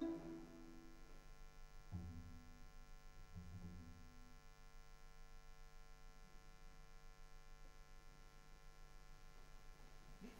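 Near silence as a string quartet's movement dies away: the last held chord fades, two soft low string notes sound about two seconds in and again around three and a half seconds, and then only a steady low hum remains.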